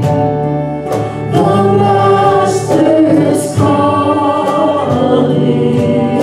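Church praise band singing a gospel hymn with keyboard accompaniment, several voices together over a steady beat.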